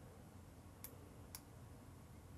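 Near silence with two faint computer mouse clicks about half a second apart.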